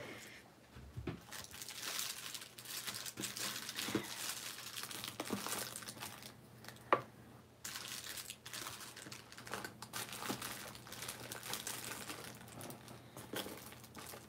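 Rustling and crinkling as craft supplies are handled and sorted, with one sharp click about seven seconds in.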